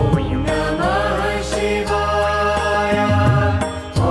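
Devotional music: a chanted mantra sung over a steady instrumental accompaniment.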